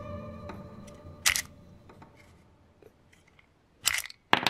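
A guitar chord rings out and fades. Then come two sharp mechanical clicks, about a second in and again near the end, from a handmade wooden toy revolver as its cylinder is turned and aluminium dummy cartridges are taken out.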